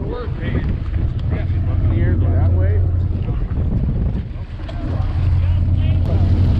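Low, steady rumble of the charter boat's engine, with wind buffeting the microphone and faint voices of other anglers on deck.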